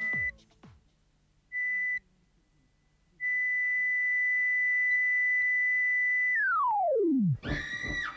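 Electronic heart-monitor beep: two short beeps about a second and a half apart, then a long, steady flatline tone. About six seconds in, the tone slides steeply down in pitch and dies out, like a machine powering down.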